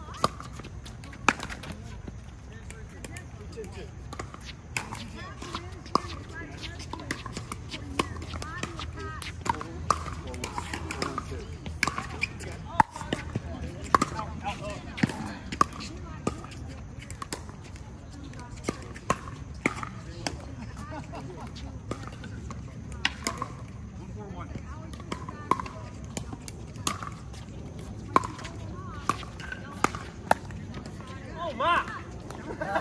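Pickleball paddles striking a plastic ball during rallies: sharp pops at irregular intervals throughout.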